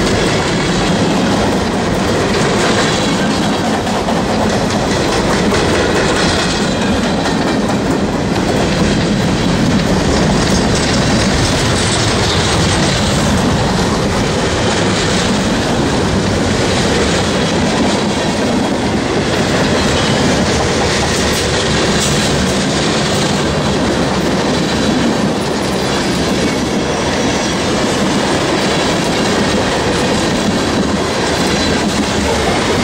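Freight cars of a long mixed freight train rolling past close by, steel wheels running on the rails in a loud, steady rumble.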